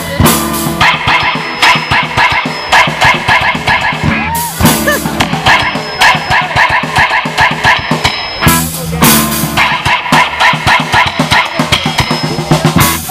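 Live band playing an upbeat children's song: electric guitars and a drum kit keeping a steady beat, with a trumpet.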